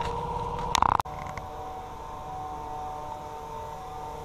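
Steady hum of a motor-driven sprayer pump running while dormant oil is sprayed through a hose gun, with a faint hiss of spray. A brief loud burst of noise comes just before a second in.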